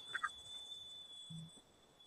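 Near silence with a faint, steady high-pitched whine. A few very short, faint squeaks come just after the start.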